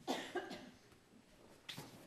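A person coughing twice in quick succession in a room, followed about a second later by a single short knock.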